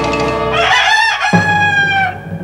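A held music chord ends just under a second in, and a rooster crows once, a wavering call that settles into a long, slightly falling note lasting about a second and a half.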